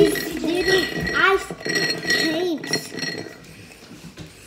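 A boy humming a wordless sing-song tune in rising and falling phrases, trailing off near the end, with a faint steady high tone underneath.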